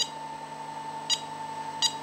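Two short electronic key beeps from a Siemens touch panel HMI as digits are pressed on its on-screen numeric keypad, about a second apart. Underneath runs a faint steady hum and whine from the VFD-driven motor.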